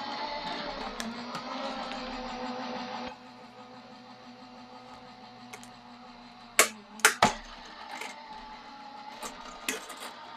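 Gemini Junior electric die-cutting machine running, its motor drawing the die-and-plate sandwich through its rollers with a steady hum. The hum is louder for the first three seconds, then quieter, with a few sharp knocks around seven seconds in.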